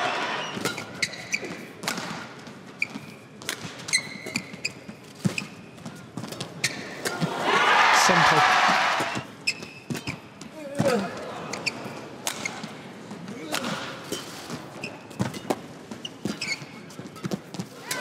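Badminton rally in an arena: sharp racket strikes on the shuttlecock and court-shoe squeaks, with a swell of crowd noise about eight seconds in and the crowd starting to roar right at the end as the match point is won.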